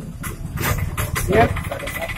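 A vehicle engine running nearby, a steady low rumble, with a man's voice saying a word over it.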